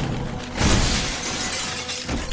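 A sudden loud crash with shattering, about half a second in, fading over the next second, over dramatic film score music.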